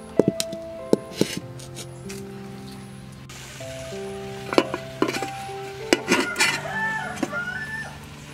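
Background music over the clank of a steel bowl, wok and aluminium lids knocking together. A sizzling hiss starts a few seconds in, and a rooster crows near the end.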